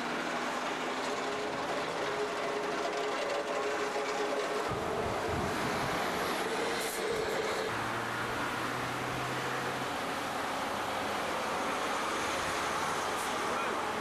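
Steady rumble of heavy vehicle engines and road traffic, with a low hum for a couple of seconds in the middle.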